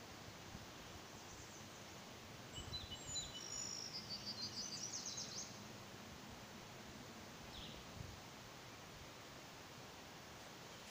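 Faint bird song over a low, steady outdoor background: a run of quick, high chirps and trills from about two and a half seconds in, lasting around three seconds, then one more short call near the end.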